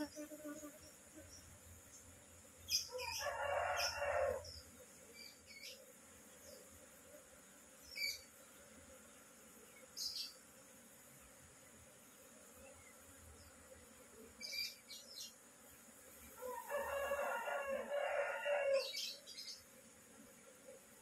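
A rooster crows twice, once about three seconds in and again near the end, each call lasting a couple of seconds. A few short high bird chirps fall between the crows, over the faint steady hum of a honeybee colony.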